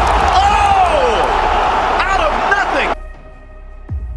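Football stadium crowd noise with loud voices rising and falling over it, cut off abruptly about three seconds in. Quiet background music follows, with one sharp deep drum-like hit near the end.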